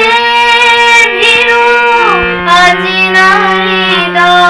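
A girl singing a melody solo, holding long notes that glide between pitches, over a sustained accompaniment note. The accompaniment note drops lower about halfway through.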